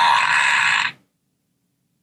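A novelty toy hippo's sound button playing its fart noise, lasting about a second and cutting off abruptly.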